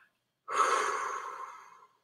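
A woman's deep, breathy exhale, sighed out and unvoiced, starting about half a second in and fading away over about a second and a half: a letting-go breath in a guided breathing exercise.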